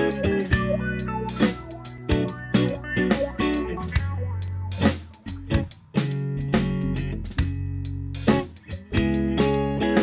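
Instrumental background music: plucked guitar notes ringing over a bass line.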